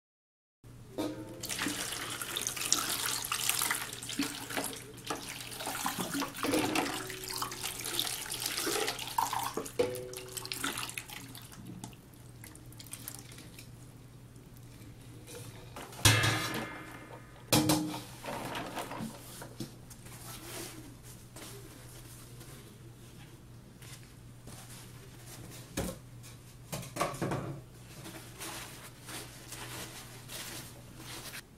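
Water sloshing and splashing in a stainless steel bowl as plastic bottles and jars are swished around and rinsed by hand. Past the middle the splashing stops, and the metal bowls give a couple of sharp ringing knocks as they are handled, followed by quieter handling. A faint steady hum lies under it all.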